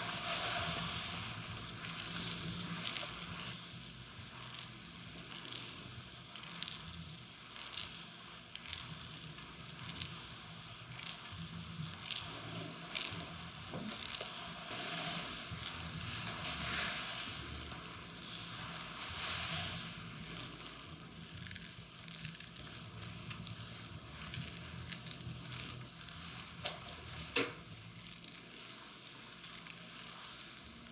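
Massage friction: hands or tools rubbing and sliding over skin, a continuous crackly rustle with many small clicks and pops.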